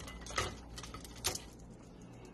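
Crispy microwaved chicken skin crackling and snapping as it is broken up by hand on a plate, with two sharper snaps, the first less than half a second in and the second just past the middle, and lighter crackles between.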